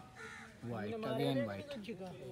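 Men's voices calling out indistinctly in the open air for about a second, starting just after half a second in.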